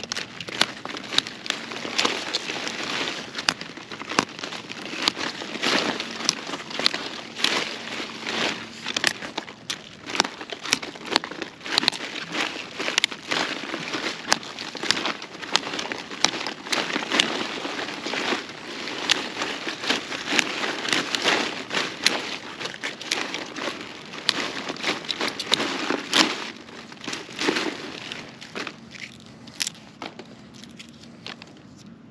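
Brussels sprout leaves being snapped off the stalk by hand, pulled from the side in quick snaps. It makes a fast, irregular run of sharp cracks and crackles with leafy rustling between them.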